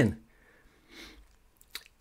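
A pause in a man's voice-over: a faint breath about a second in, then small mouth clicks just before he speaks again.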